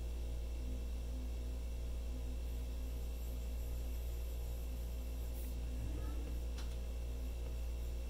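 Steady low background hum with a faint throb pulsing about twice a second, and a few faint ticks about five to eight seconds in.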